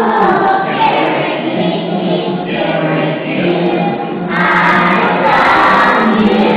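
A group of young children singing together as a choir, quieter in the middle and swelling louder again about four seconds in.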